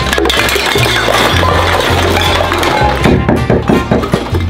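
Upbeat background music, with metal cans and plastic bottles clattering out of a kitchen cabinet onto the floor, ending in a few sharp knocks.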